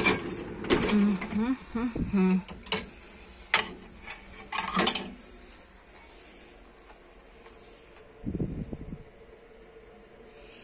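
Dishes and a dishwasher's wire rack being handled: several sharp clinks and knocks over the first five seconds. Then little but room noise, with a short low thud near the end.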